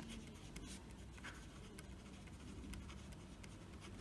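Faint scratching of a pen writing on paper, in short, irregular strokes.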